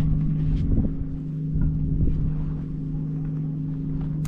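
A steady low engine hum, as of an idling motor, with wind rumbling on the microphone.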